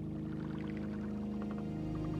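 Ambient new-age music slowly getting louder: a sustained low synthesizer chord, with a patter of short, irregular ticks above it like water or bubbles.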